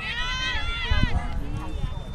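High-pitched shouting from people at an outdoor soccer game, with a sharp thump about a second in, over a steady low rumble.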